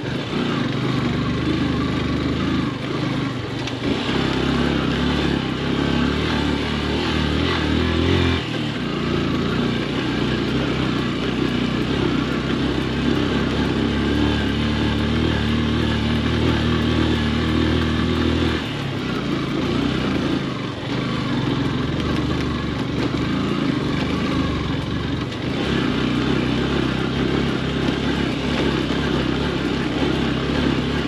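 Yamaha FZ motorcycle's single-cylinder engine running while riding slowly over a rough dirt road, with a steady hiss alongside. The engine note shifts a few times, about 4, 8 and 18 seconds in, as the throttle or gear changes.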